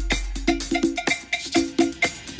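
Disco house DJ mix: a percussion break of short pitched hits in a quick, even rhythm over a held low bass note.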